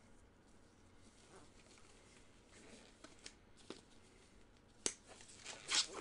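Quiet handling of trading cards and their packaging, with a few light clicks and taps from about three seconds in and a short rustle of card or wrapper just before the end.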